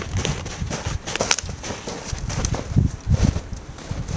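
Footsteps of two people walking through snow: irregular soft thuds, with a couple of sharper clicks just over a second in.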